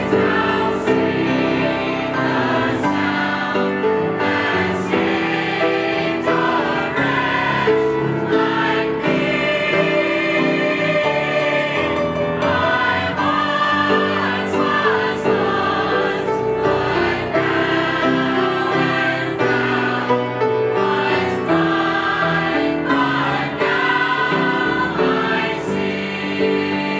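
A mixed church choir of men's and women's voices singing a hymn together, in sustained phrases.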